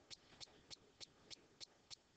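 Near silence with faint, evenly spaced ticks, about three a second.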